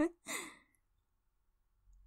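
A woman's short breathy sigh with a falling pitch, followed by silence.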